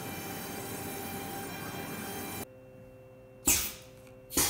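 Water-cooled 2.2 kW ATC spindle of a CNC router running as it surfaces the MDF spoilboard, a steady rushing noise. It stops suddenly partway through, and near the end a short, loud hiss of compressed air comes from the spindle's pneumatic tool-release valve.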